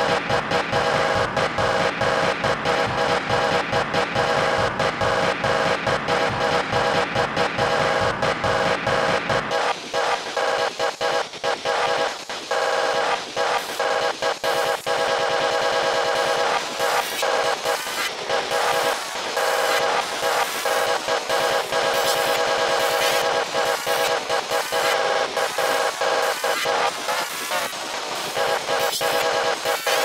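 Sparta-style electronic remix music: a dense, loud track of rapidly chopped, stuttering samples with a steady beat, pitch-shifted in the G-Major manner. The bass drops out suddenly about a third of the way in, leaving the thinner mid and high parts stuttering on.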